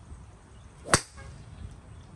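A golf club striking a golf ball during a full swing: a single sharp crack about a second in.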